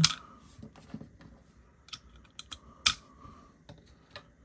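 Irregular hard plastic clicks and taps from a plastic action figure being handled while plastic pizza discs are pushed into the loader in its back. One sharp click near the three-second mark is the loudest.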